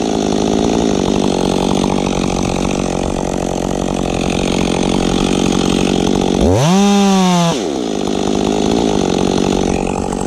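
Freshly rebuilt two-stroke chainsaw cutting steadily under load into the base of a Douglas fir. About six and a half seconds in, the engine note frees up for about a second, rising and falling, then settles back into the cut.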